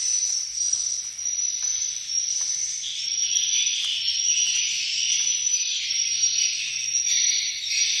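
Swiftlets twittering and chirping in a dense, continuous high-pitched chorus, with a short sharp chirp repeating every second or so above it.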